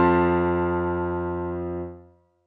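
Piano accompaniment ending a children's song on one final chord, held and slowly fading, then released near the end.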